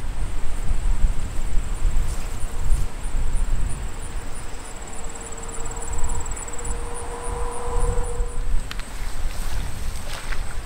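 Wind buffeting the microphone, a gusty low rumble throughout, with a faint steady hum through the middle that fades out after about eight and a half seconds.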